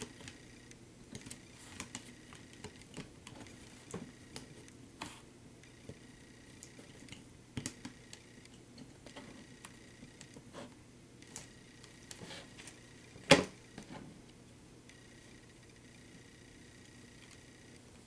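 Faint clicks and taps of a multirotor frame's top plate and parts being handled and fitted by hand, with one sharp, louder click about thirteen seconds in.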